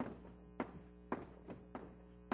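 Irregular sharp taps, about five in two seconds, from writing on a lecture board, over a steady low hum.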